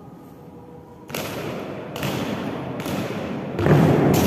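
Soldiers' boots striking a stone floor in a slow ceremonial march: heavy steps that begin about a second in and come roughly every 0.8 s, echoing, with the loudest near the end.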